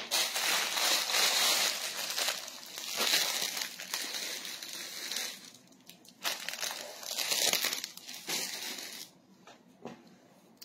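Clear plastic packaging bags crinkling and rustling in repeated bursts as they are handled and opened, dying away about nine seconds in.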